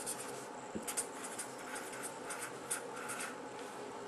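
Faint writing: a pen scratching out short, irregular strokes across a writing surface.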